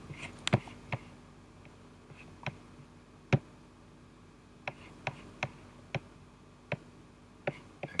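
Computer mouse clicks: about a dozen short, sharp clicks at irregular intervals, the loudest a little over three seconds in, over a faint steady hum.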